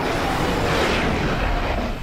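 Loud, dense rushing rumble of dramatic sound effects from a horror TV episode, with no clear pitch and a heavy low end, held steady throughout.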